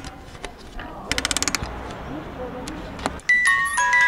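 Music box being wound, with quick ratcheting clicks in short bursts, then about three seconds in it starts playing a chiming tune of plucked bell-like notes.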